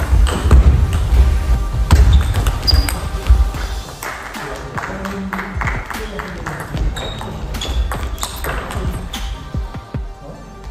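Background music with a heavy bass beat, loudest in the first four seconds, over two table tennis rallies: the ball clicking sharply off the paddles and the table in quick exchanges.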